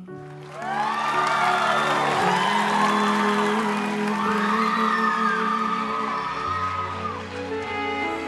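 The closing chords of a ballad's backing track hold under an audience that breaks into cheering, whooping and applause about a second in, when the song ends.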